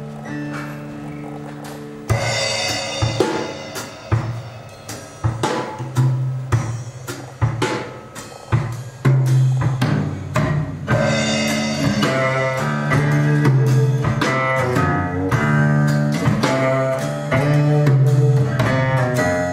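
Recorded music played back through a Rogue Audio Cronus Magnum III valve amplifier driving JBL L100 Classic loudspeakers. Held low notes give way about two seconds in to a drum kit, with bass and other instruments, which grows busier towards the end.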